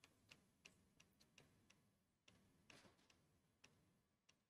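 Near silence, broken by faint, short clicks at uneven intervals, about a dozen in all.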